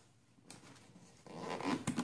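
A clear plastic scissor caddy being handled and turned, a faint scraping rustle of plastic. It starts about half a second in and grows louder toward the end.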